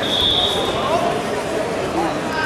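A single high-pitched beep lasting about a second at the start, over the chatter and calls of voices in a large sports hall.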